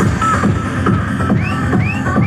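Loud techno track played by a DJ over a club sound system, with a fast, steady kick drum and bass. About two-thirds of the way in, a repeated synth note that sweeps upward comes in, about two and a half times a second.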